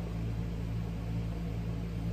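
Steady low hum of a room air conditioner running, with a few steady low tones under an even hiss.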